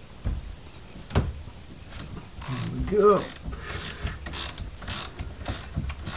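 Ratchet wrench clicking in short strokes, roughly one every half second, as a nut on the car's front steering is worked, starting a little before halfway. Two dull knocks come before it.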